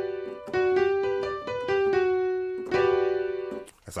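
Electric piano in E minor playing chords that bounce into one another: a held chord, a quick run of shifting notes, then a held suspended chord about three seconds in that dies away before the end.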